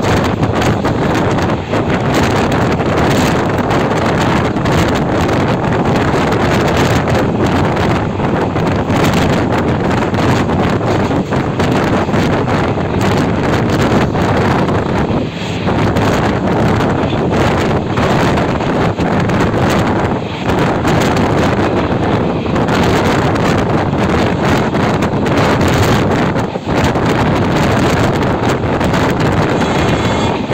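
Strong wind buffeting the microphone at the open door of a passenger coach running at speed. The coach's rolling noise on the rails sits underneath as a steady rush.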